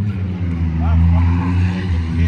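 An engine idling, a steady low drone that swells slightly about a second in.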